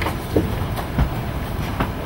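Steady low room noise in a lecture hall, broken by a few short knocks and bumps.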